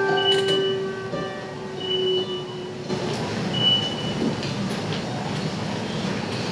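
Recorded acoustic guitar accompaniment played back over speakers, its last notes held and ringing until about three seconds in, then giving way to a steady noisy rumble.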